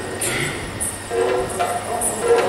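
Yakshagana stage music: a steady, reedy drone held under the scene, with small hand cymbals struck at an even beat a little under twice a second.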